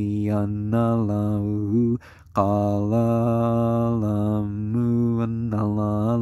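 A man's voice chanting in long, held notes on a nearly steady low pitch, with a brief pause for breath about two seconds in.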